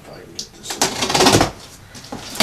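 A blade slitting the packing tape along the seam of a cardboard box: a click, then about a second of loud, scratchy tearing.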